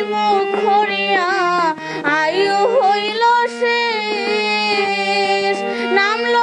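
A girl singing a devotional song, with bending, ornamented phrases, over a harmonium that holds steady reed chords beneath her voice.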